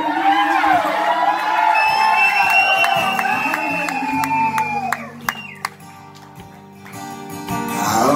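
Live acoustic guitar with a male voice singing a wordless, swooping vocal run over it. About five seconds in the singing stops and the guitar rings on more quietly, then the playing picks up again near the end.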